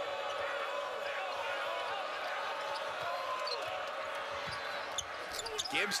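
Basketball being dribbled on a hardwood court over the steady murmur of a large arena crowd during live play.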